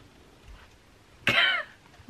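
One short, loud cough-like vocal burst from a person, about a second and a quarter in, after a stretch of quiet room.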